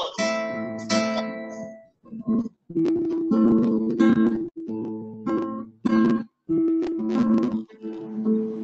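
Nylon-string classical guitar holding an A minor chord, playing a bass note on the fourth string followed by two strummed chords, again and again in a steady pattern. The sound cuts out abruptly for short moments between some strokes, as audio over a video call does.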